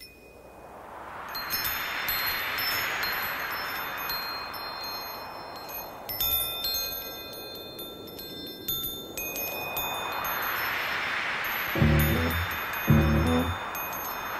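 Wind chimes ringing over a soft wash of noise that swells up and fades away twice. Near the end a deep bass beat comes in.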